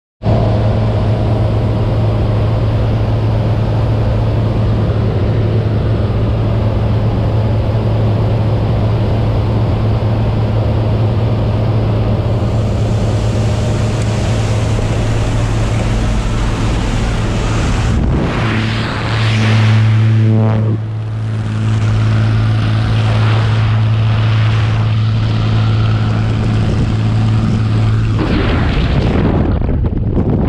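Propeller-driven jump plane's engine droning steadily, heard from inside the cabin as a low, even hum over rushing air. A brief surge of rushing noise comes about two-thirds of the way through.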